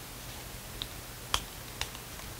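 Three short, light clicks and taps from handling a small perfume sample vial and a paper testing strip, the loudest in the middle.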